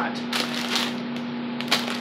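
Doritos chip bag crinkling as it is handled, in a few short rustles, over a steady low hum.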